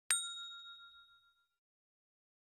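A single bell-like ding sound effect, struck once right at the start and ringing out, fading away over about a second and a half. It is the notification-bell chime of a subscribe-button animation.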